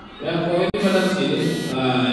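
Melodic chanting with long held notes, starting a moment in, with a very brief break just under a second in.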